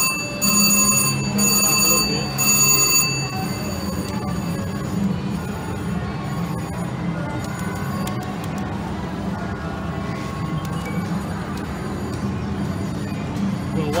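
VGT reel slot machine's electronic win bell ringing in repeated pulses as a small win is credited, stopping about three seconds in. After that, the steady hum of a casino floor with faint chimes from other machines.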